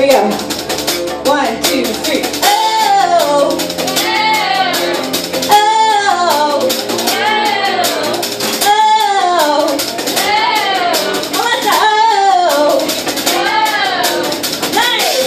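Live band playing: sustained keyboard and bass notes under a voice singing a short wordless phrase that rises and falls, repeated about every one and a half seconds.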